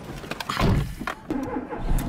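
Clicks and knocks of handling inside a Ford car's cabin as the key is turned in the ignition, with the engine's low running rumble setting in near the end.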